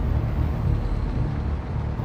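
Low, steady rumbling drone from a horror film's soundtrack.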